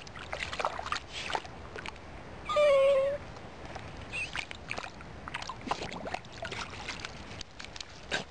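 Small dachshund splashing and paddling in shallow water, with irregular short splashes throughout. About two and a half seconds in comes a single short, high-pitched whine from the dog, falling slightly at the end, which is the loudest sound.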